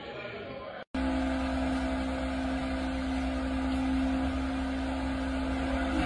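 A steady machine hum with one held low tone and a constant low rumble beneath it, starting abruptly after a brief silence about a second in.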